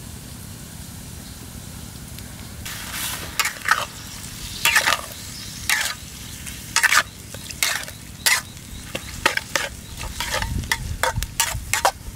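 A metal ladle scrapes and stirs chopped eel pieces frying in a steel wok, over a faint sizzle. The strokes start about two and a half seconds in, come roughly once a second, and come faster and closer together near the end.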